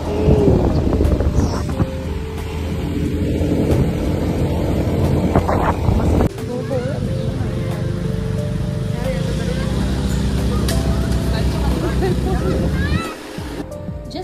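Motorbike ride with wind and engine noise for about six seconds, cutting off suddenly to background music with voices.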